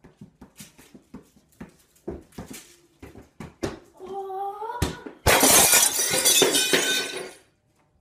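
Soccer ball tapped again and again off foot and knee during keepy-ups, a quick run of light thuds. A voice cries "oh, oh" about four seconds in, then a thud. Just past five seconds comes glass shattering and tinkling for about two seconds.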